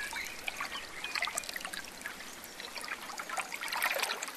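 Trickling water with many small drips and ticks over a steady hiss.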